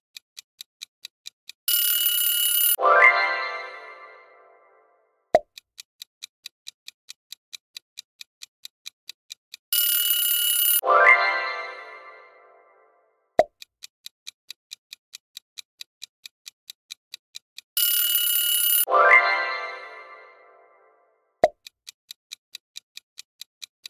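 Quiz-game timer sound effects, repeating three times. Each time a countdown clock ticks about four times a second, an alarm-like ring of about a second marks time up, a chime sounds and fades over about two seconds, and a single pop follows before the ticking starts again.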